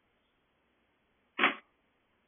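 A single short thump about one and a half seconds in, against a faint steady hiss.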